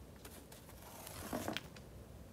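Tennis ball rolling down a cardboard ramp onto a tile floor and striking a small wooden block, knocking it aside: faint rolling, then a few soft knocks and a short scrape about one and a half seconds in.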